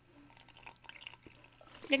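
Water poured from a container into a ceramic cup: a faint trickle and splash.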